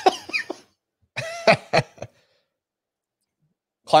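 A man laughing hard in breathy, cough-like bursts: one around the start and a shorter one about a second in, then silence until speech starts near the end.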